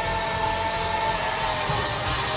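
Loud live electronic pop music played through an arena PA, overdriven on the recording into a harsh, buzzing wall of sound, with a long held note running through it.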